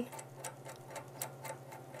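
Faint light metallic clicks, about four a second, as screws and the steel shear blade are handled and screwed into the blade holder, over a low steady hum.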